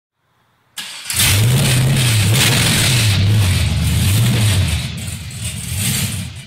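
GM LS1 5.7-litre V8 starting for the first time after a brief crank: it catches just under a second in and runs loud, its pitch swelling and falling about three times before it drops back near the end.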